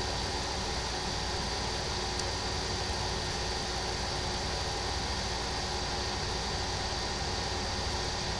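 A steady hum and hiss that holds even throughout, with a faint high steady tone riding over it.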